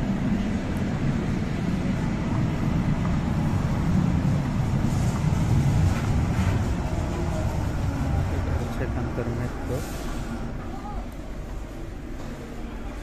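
Underground light-rail train moving through the station, a low rumble that swells to its loudest around the middle and fades toward the end, echoing in the tiled platform hall.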